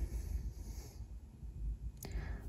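Quiet room tone with a steady low hum and no distinct sound event.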